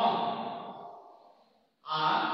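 A man's voice trails off into a breathy sigh that fades away over about a second and a half. A brief silence follows, then his voice starts up again abruptly just before the end.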